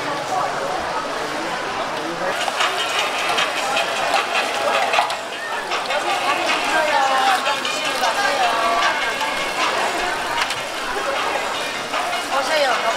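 Busy market chatter: several people talking at once in the background. Oil sizzles and crackles on a griddle where mung bean pancakes are frying.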